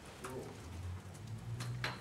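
A few sharp computer keyboard keystrokes over a low, steady hum that grows a little louder in the second half.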